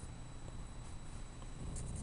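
Quiet room tone: a low steady hum with faint, indistinct small noises.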